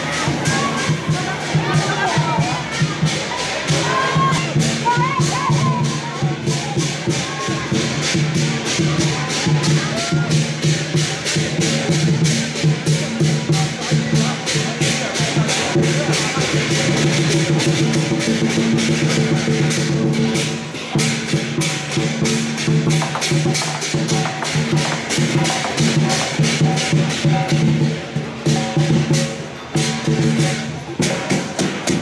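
Lion dance percussion: a large drum with clashing cymbals and gong, struck in a fast, steady beat. Crowd voices can be heard in the first few seconds.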